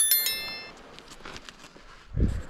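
A notification-bell chime sound effect, struck once and ringing out bright and high over about half a second.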